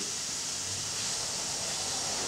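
A pause in speech, filled only by a steady background hiss of room tone.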